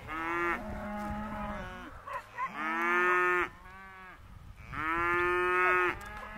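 Young Hereford and Angus cross cattle, steers and heifers, mooing: three long moos one after another, the first right at the start, the next about two and a half seconds in and the last near the end.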